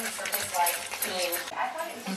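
Indistinct voice sounds with gliding pitch, not clear enough to make out words.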